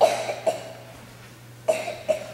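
A person's short, sharp vocal bursts: one at the start, another about half a second later, and a third near the end, each cut off quickly.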